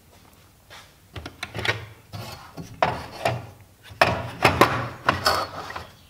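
A Bora circular-saw plate being handled and slid across a plywood bench and onto its aluminium guide track, with irregular knocks and scrapes that start about a second in and grow busier toward the end.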